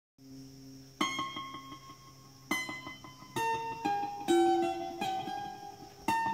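Mandolin playing an instrumental introduction: a low hum, then picked chords about a second in, and again at about two and a half and three and a half seconds, followed by a run of ringing melody notes.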